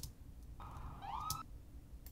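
A brief police siren whoop in city street ambience: a single tone that holds, then rises in pitch for about a second, over a faint low rumble. A couple of sharp clicks come at the start and again as the siren ends.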